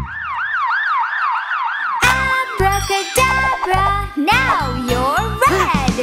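Cartoon ambulance siren sound effect: a rapid up-and-down yelp repeating a few times a second. About two seconds in it gives way to bouncy children's song music with a steady beat and sliding pitch glides.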